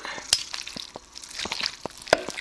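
A fork shredding cooked pork shoulder in a bowl: a few sharp clicks of the fork against the bowl, the loudest about a third of a second in, with soft noise of the meat being pulled apart between them.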